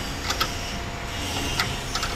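A few light, sharp clicks and taps from hand work under a vehicle's rear bumper, over a steady low mechanical hum.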